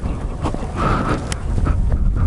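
Kawasaki Z900RS inline-four rolling at low speed, heard as a steady low rumble mixed with wind buffeting on a helmet-mounted microphone. A brief hazy sound comes about halfway through, followed by a single click.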